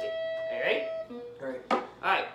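A single guitar note ringing steadily, then stopping about halfway through, followed by short voice sounds without clear words.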